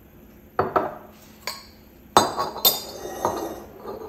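Glass bottles clinking and knocking as they are handled and set down on a countertop: about six sharp clinks over three seconds, each ringing briefly, the loudest two a little past halfway.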